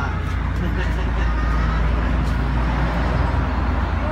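Steady low rumble of a motor vehicle's engine running close by, with general street traffic noise.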